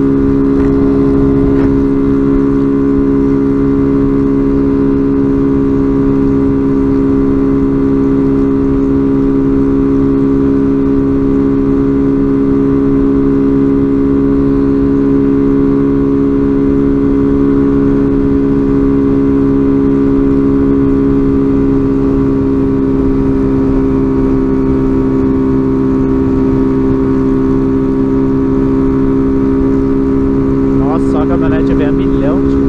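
Small motorcycle engine running steadily at an even cruising speed, its pitch holding level, with wind rumbling on the helmet-mounted microphone.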